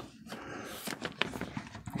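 Faint rustling of a plastic binder pocket page as a baseball card is slid into its pocket, with light ticks and scrapes of card against plastic.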